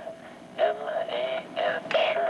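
Votrax voice synthesizer speaking in a flat, robotic monotone, its syllables coming in short choppy pieces at one unchanging pitch.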